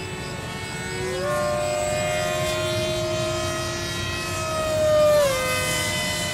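Radio-controlled model airplane's propeller and motor whining overhead. The pitch steps up about a second in, then the sound grows louder and drops sharply in pitch near the end as the plane passes by.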